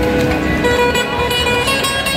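Live band music: electric guitar and keyboard playing sustained notes.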